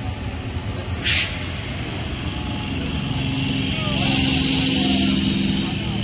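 Electric multiple-unit local train rolling past close by with a steady low rumble. A short sharp hiss of air comes about a second in, then a longer steady air hiss with a hum from about four seconds in, typical of the air brakes working as it slows for the station.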